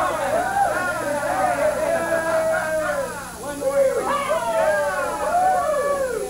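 A high singing voice holding long notes that glide up and down, over a steady low hum.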